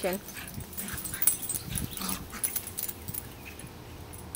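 Small dogs playing together on grass: scattered short scuffling noises and clicks, with faint dog vocal sounds.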